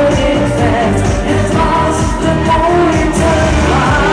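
Loud live pop music: a female singer singing into a microphone over a full musical backing.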